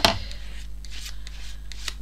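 Palette knife scraping wet acrylic paint off onto a paper journal page: a sharp scrape right at the start, then softer rubbing and paper handling.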